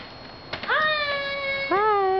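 A child's high, drawn-out two-note vocal call: a first long note rising and then held, followed by a lower held note, like a sung flourish on arrival.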